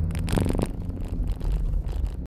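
Low rumble of a car running, heard inside the cabin, with rustling and tapping as the phone filming is handled. A short vocal sound comes about a third of a second in.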